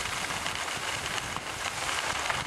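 Steady rushing hiss of skiing downhill: skis sliding over snow, with air rushing past the microphone.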